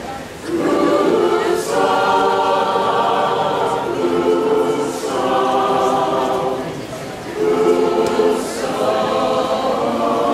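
Mixed choir of men's and women's voices singing unaccompanied in harmony. Held phrases of a few seconds each are broken by short breaths.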